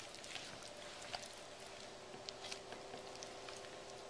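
Faint, quiet sounds of a knife and hands working a raw whole chicken, cutting along the breastbone, with a few small clicks. A faint steady hum runs underneath.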